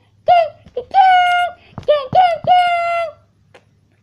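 A child singing high wordless notes: a few short notes and two longer held ones, stopping about three seconds in.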